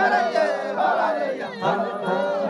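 A group of Maasai voices chanting together, many calls overlapping and rising and falling in pitch, with a short break about one and a half seconds in.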